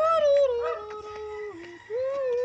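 A person singing long held notes that step down in pitch over about a second and a half, then a new, higher note begins near the end.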